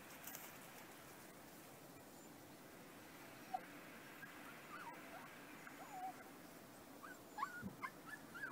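A dog whimpering in short, high-pitched whines that come more often and louder near the end, over a faint steady outdoor background, with one sharp click about three and a half seconds in.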